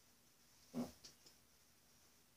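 One short vocal sound from a boy, a brief pitched burst through closed lips, followed a moment later by two faint clicks.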